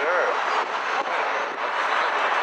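Steady rush of wind and road noise on the open top deck of a moving double-decker bus.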